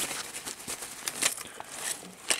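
Rustling and crackling with quick clicks as hands move a vampire animatronic's cloth cape and plastic body.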